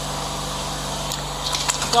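Wooden pestle pounding soft boiled garden eggs in a mortar: a run of quick knocks starting about a second in, over a steady low hum.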